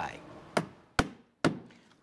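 Hammer driving a roofing nail through metal step flashing into the roof: three blows about half a second apart, the middle one loudest.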